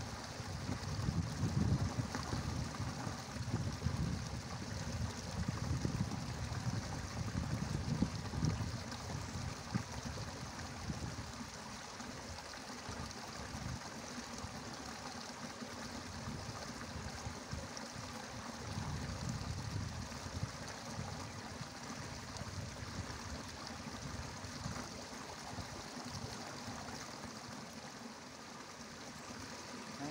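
Outdoor ambience: a steady rushing, trickling noise of running water, with low rumbling gusts of wind on the microphone that ease off after about ten seconds.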